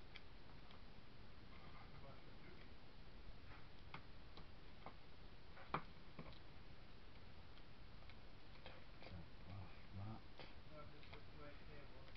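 Faint, irregular clicks and taps of hands handling paper, tape and a tape roll on a stone countertop, with one sharper tap about halfway through.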